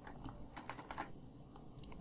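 Computer keyboard keys being pressed: faint, irregular clicks as code is edited.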